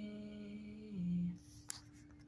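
A woman humming one long held note that drops a step about a second in and stops, followed by a single sharp click.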